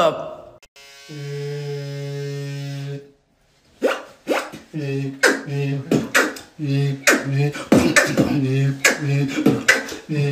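Beatboxing: a steady, low buzzing hum held for about two seconds, then, after a short pause, a rhythmic beat of short buzzes alternating with sharp percussive clicks.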